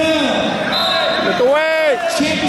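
Spectators yelling at a wrestling match: long drawn-out shouts, with one loud yell that rises and falls in pitch near the end.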